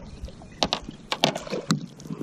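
Handling noises on a small fishing boat: a scatter of irregular light clicks and knocks over faint background noise.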